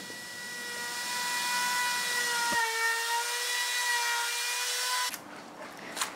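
Handheld wood router with a quarter-inch round-over bit running at speed while rounding over the end of a 2x4, giving a steady high whine. The pitch dips slightly for a moment near the middle, and the sound cuts off about five seconds in.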